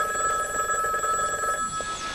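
Desk telephone ringing with a warbling electronic trill: one ring that stops about one and a half seconds in.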